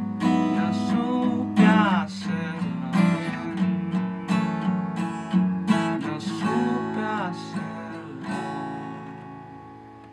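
Acoustic guitar strummed and picked, a run of chords with a sharp attack every half second or so. A final chord about eight seconds in rings out and fades away, closing the song.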